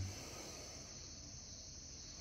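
Steady high-pitched chorus of insects.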